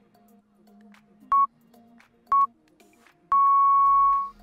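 Countdown timer beeps over soft background music: two short beeps a second apart, then a longer final beep marking the end of the timed stretch.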